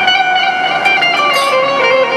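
Instrumental music from a live stage band: a plucked string instrument playing a stepping melody over held notes.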